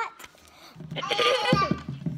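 A young girl's voice making a drawn-out wordless sound about a second in, followed by a cough near the end.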